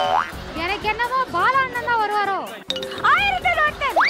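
A cartoon 'boing' sound effect right at the start, then drawn-out, sing-song voices swooping up and down in pitch over background music.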